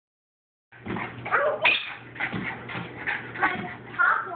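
Small dog barking in short, repeated yips and whimpers, starting just under a second in.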